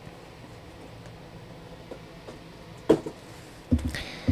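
Foam packing blocks being handled and slid along a metal microphone boom arm during unboxing: mostly faint rustling handling noise, with one sharp click about three seconds in and a dull knock just before the end.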